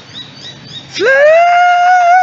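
A man's voice sings one high held note, scooping up about a second in and settling near F5, with a slight waver toward the end.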